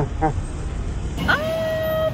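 Street noise from a busy night market, with a woman's short vocal sound at the start. About a second and a half in comes a high, held "mmm" of delight as she eats a bite of food.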